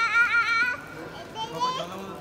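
A child's high-pitched, wavering squeal that stops under a second in, followed by quieter scattered voices.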